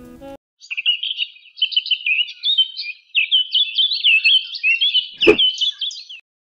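A bird chirping in a quick, busy run of high notes that stops abruptly, with a single sharp click about five seconds in. The last notes of background music cut off just at the start.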